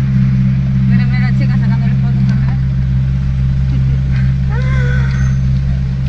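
Steady low engine rumble of the red Ferrari idling and creeping along in slow traffic just ahead, heard at close range, unchanging throughout. Faint voices come through briefly about a second in and again near the end.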